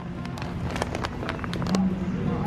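Plastic stand-up pouches of watermelon seeds crinkling in a series of short crackles as they are grabbed and pulled off a shelf, over a steady low hum.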